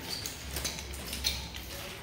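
A wooden nunchaku being spun through a wrist-roll combo: a few faint, irregular clicks and swishes over a steady low hum.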